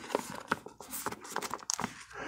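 Clear plastic nine-pocket binder page crinkling as a baseball card is slid into one of its pockets, with a few light clicks and taps.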